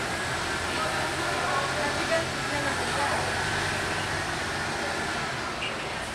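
Street noise: a tow truck's engine running steadily while its crane lifts a car onto the truck bed, with traffic and people talking in the background.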